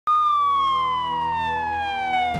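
A police siren sounding one loud tone that starts suddenly and slides slowly down in pitch, over a low steady hum.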